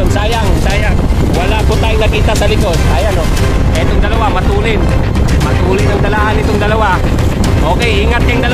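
Steady low rumble of wind on the microphone and the running of the vehicle the camera rides on, pacing the road cyclists, with a voice heard over it throughout.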